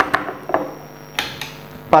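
A few small sharp plastic clicks and knocks as a power plug is pushed into a power-strip socket and the cord is handled, the strongest click about a second in.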